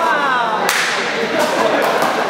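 A sneaker squeaks on the court floor with a short falling squeal, then the rubber handball gives one sharp, loud smack about two-thirds of a second in, followed by a couple of lighter knocks.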